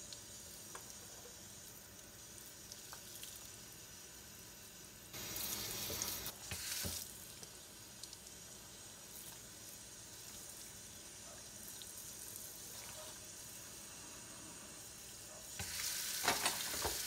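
Water from a kitchen sink sprayer hissing into the sink as it rinses soap suds down the drain. The spray gets louder for about two seconds around five seconds in.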